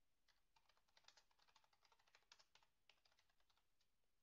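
Faint computer keyboard typing: a quick run of about twenty keystrokes over roughly three seconds as a short line of text is typed.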